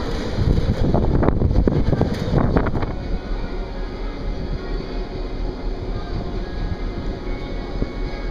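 Wind buffeting the microphone on an open ship deck for about three seconds, then an abrupt change to a quieter deck ambience: a steady low hum with faint music playing over it.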